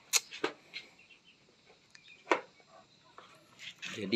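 A few light, sharp clicks and taps of handling: three in the first second, one in the middle and a couple near the end, with quiet between.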